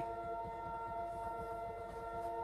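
Beer dispenser's cooling unit running: a steady hum made of several held pitches, with no change in pitch or level.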